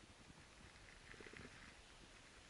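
Near silence in a snowy woods, with a few faint soft crunches about a second in.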